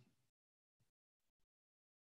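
Near silence: a pause between spoken sentences, with the recording practically empty.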